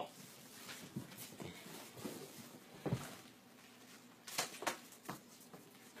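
A few faint, scattered taps and scuffs of a chicken's claws stepping on a hard floor, in a quiet room.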